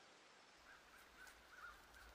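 Near silence, with faint, short, repeated bird chirps.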